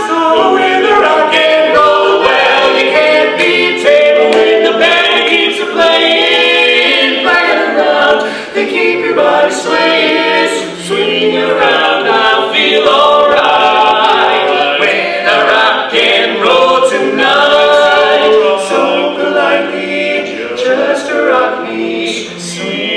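Four-man barbershop quartet singing a cappella in close four-part harmony, with no instruments.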